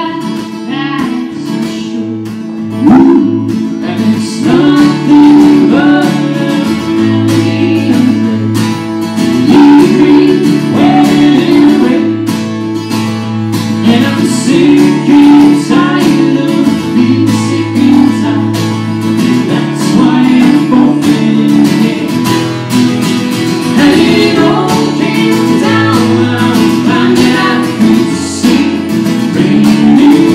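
Live acoustic song: a steadily strummed acoustic guitar with a woman singing the melody into a microphone.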